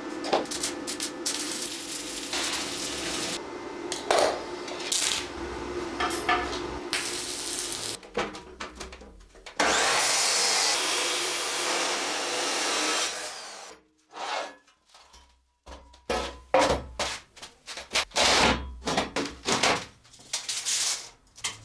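Abrasive cut-off saw (chop saw) cutting through steel bar: one loud, even cut lasting about four seconds in the middle. Before it there is a steady hum with scattered clicks, and near the end a quick run of sharp metal knocks.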